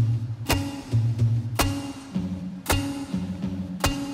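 Acoustic guitar playing a slow groove. A sharp percussive hit falls about once a second over held low notes.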